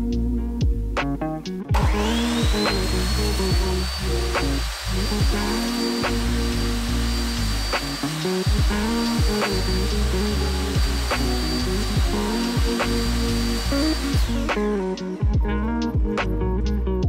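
Ryobi sliding compound miter saw started up, its motor whine rising and then holding steady as the blade is pulled down through a strip of white picture-frame trim; the motor cuts off near the end. Background music with a steady beat plays throughout.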